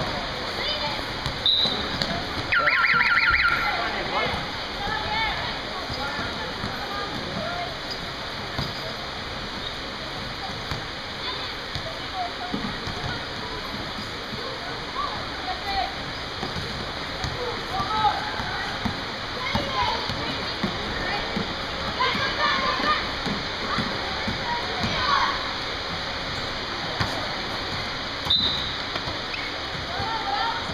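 Indoor basketball game ambience: steady hall and crowd noise with scattered voices and the ball bouncing on the court. About three seconds in, a short trilling referee's whistle, the loudest sound.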